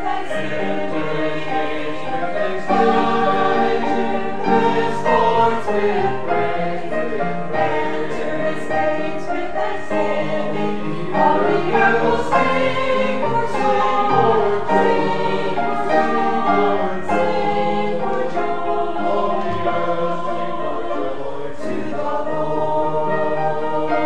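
A choir singing, with no break.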